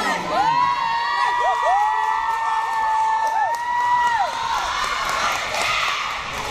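Spectators cheering for a dance team: several voices hold long, high-pitched screams and whoops that overlap for about four seconds, then give way to rougher crowd noise near the end.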